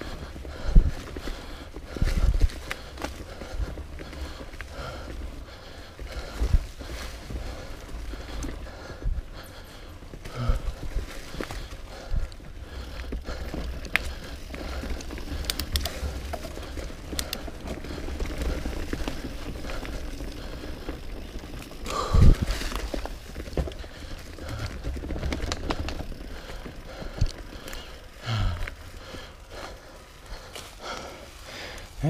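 Mountain bike rolling fast down a leaf-covered dirt singletrack: steady tyre noise over dry leaves and dirt with the bike rattling, broken by several sharp knocks from bumps, the loudest about 22 seconds in.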